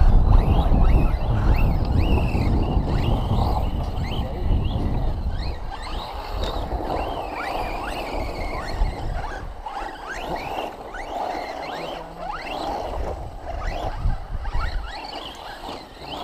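Brushless electric RC cars on a 6S battery setup, their motors whining in short rising sweeps again and again as they accelerate across the dirt.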